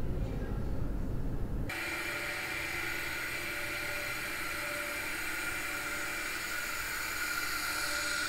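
A low rumbling room tone, then an abrupt cut about two seconds in to a steady machine hum with hiss and several constant high tones, the running plant of a stainless-steel wine tank hall.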